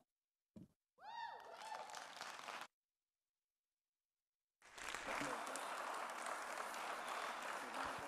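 Audience applauding after a speaker finishes, in two stretches: a short burst with a brief falling tone over it, then about two seconds of dead silence, then steady clapping to the end.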